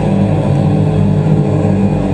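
Live black metal band playing loudly: a steady, dense wall of distorted guitars and drums with no breaks.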